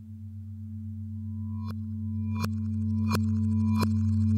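Radiophonic ambient music built from manipulated recordings of a metal lampshade: steady low drones swell in loudness while a higher tone enters about a second in. Four sharp, ringing metallic strikes follow in the second half, about 0.7 s apart.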